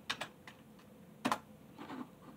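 A few short, sharp clicks and taps close to the microphone, the loudest a little over a second in.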